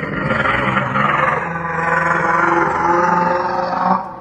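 Loud creature roar sound effect, a rough growl whose upper edge sinks in pitch, cut off suddenly at the end.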